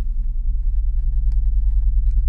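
A steady, loud low rumble, with a few faint light clicks and rubbing as a pen is pushed into a leather notebook's pen loop.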